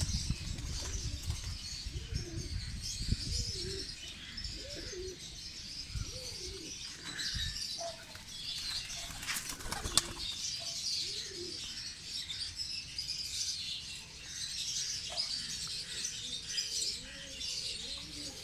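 Domestic pigeons cooing in a loft: low rising-and-falling coos every few seconds, with wing flapping and scuffling, loudest in the first few seconds, and a sharp flap or knock about ten seconds in.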